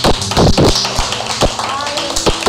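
A series of sharp, irregular knocks and taps, the loudest about half a second in, over music and voices.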